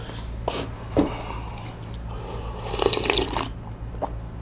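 Wet close-miked chewing and mouth sounds of a person eating. There are a few sharp clicks early on, then a denser, louder burst of wet slurping and smacking about three seconds in.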